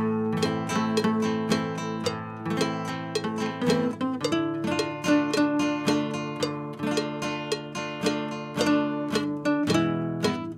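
Two nylon-string classical guitars playing together: a plucked single-note melody over strummed chords at a steady tempo.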